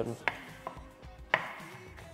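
Chef's knife chopping onion on a wooden cutting board: about four separate knife strikes, the loudest about halfway through.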